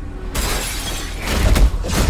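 Glass shattering: a sudden crash about a third of a second in, then a second burst of crashing noise with a low thud near the end.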